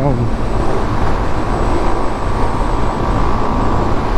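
Yamaha Fazer 250 single-cylinder motorcycle cruising steadily at highway speed, its engine note mixed with a constant rush of wind over the microphone.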